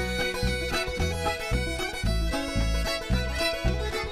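Old-time string band playing an instrumental passage: clawhammer banjo, fiddle, button accordion and upright bass, with the bass keeping a steady beat of about two a second.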